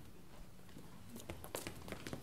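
Faint, scattered taps and clicks of actors moving on a stage, over quiet room tone; the taps come mostly in the second half.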